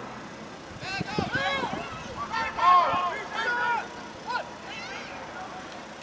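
Distant shouting voices across a youth football field: several high-pitched calls and yells, between about one and four and a half seconds in.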